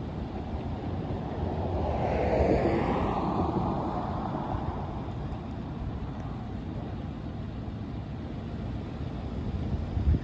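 Street traffic: a passing vehicle swells and fades about two to four seconds in. Under it is a steady low rumble of wind on the microphone.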